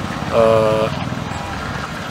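A man's voice holding one drawn-out hesitation sound, a flat 'eeh', for about half a second, over a low engine running steadily in the background.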